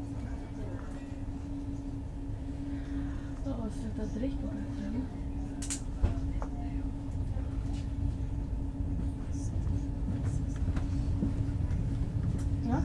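Stockholm commuter train heard from inside the carriage while running: a steady low rumble with a constant hum, growing a little louder toward the end. A sharp click and a knock come about six seconds in.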